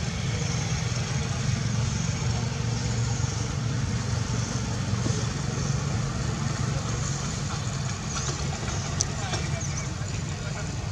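Steady low engine rumble, like a motor vehicle idling, with faint indistinct voices.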